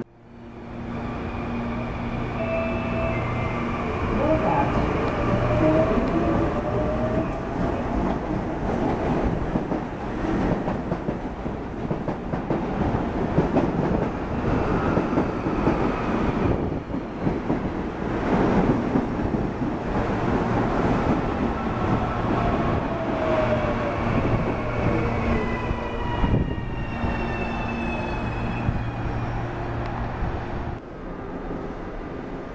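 CPTM series 8500 electric multiple-unit train running at a station platform. Under a steady electrical hum, traction-motor whines glide up in pitch a few seconds in and glide down near the end. Wheel-on-rail rumble is loudest around the middle.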